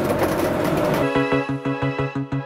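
Steady road and engine noise inside a moving motorhome's cab. About a second in, electronic background music with a steady beat starts.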